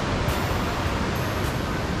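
Steady rushing of river rapids, an even roar of white water.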